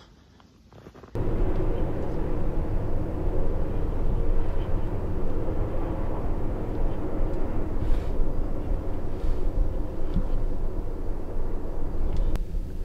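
A loud, steady, low engine-like drone starts abruptly about a second in and holds on unchanged.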